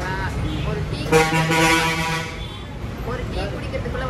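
A vehicle horn sounds in one steady, flat-pitched honk lasting about a second, starting about a second in, over street noise and voices.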